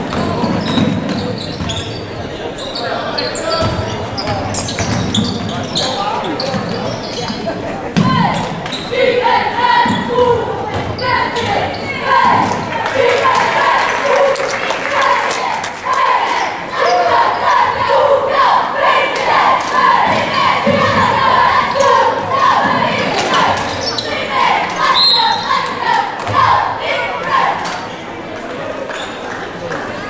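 A basketball game in a large gym: the ball bouncing on the hardwood court, with a mix of spectators' and players' voices calling and shouting, these growing busier after the first several seconds.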